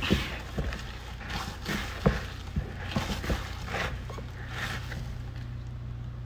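Bread dough being kneaded by a gloved hand in a plastic bowl: irregular soft knocks and squishing as the dough is pressed and folded, over a steady low hum.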